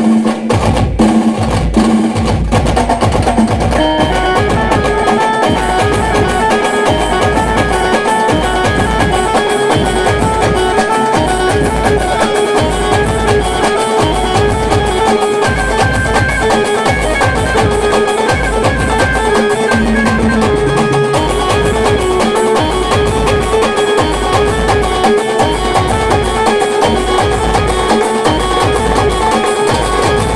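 Loud amplified live band music: a Khandeshi pavari folk tune carried by a sustained melody line over a steady heavy drumbeat, played through the band truck's loudspeakers.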